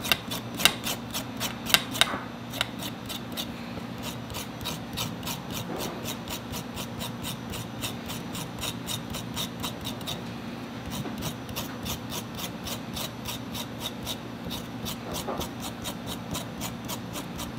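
Kitchen knife scraping the skin off a burdock root, short rasping strokes repeated about three times a second, the first few louder. A steady low hum runs underneath.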